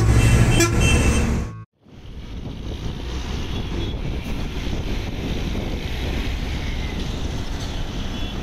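Music with a steady beat that cuts off about one and a half seconds in, then a coach's diesel engine running steadily as it pulls away, amid road traffic noise.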